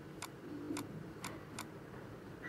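Faint, light clicks of a stylus tapping on a writing tablet as words are handwritten, about two a second at uneven spacing.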